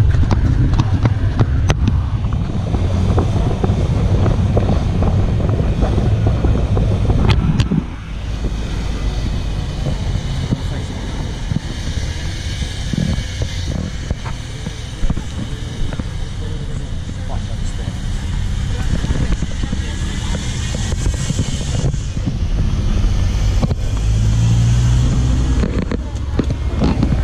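Safari jeep driving along a road, its engine and wind making a steady rumble on the vehicle-mounted camera. The rumble is heavy for about the first eight seconds, then eases.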